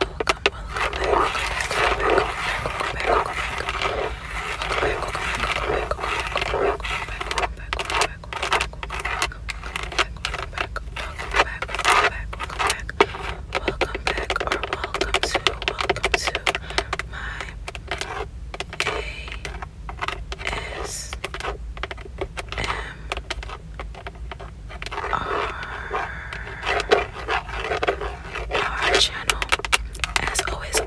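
Long fingernails tapping rapidly on a Toyota steering wheel's leather-covered airbag pad and chrome emblem. Denser stretches of scratching and rubbing over the leather come near the start and near the end.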